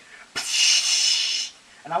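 A person making a hissing 'psssh' sound with the mouth for about a second, imitating CO2 gas rushing out of a jammed airsoft pistol's magazine.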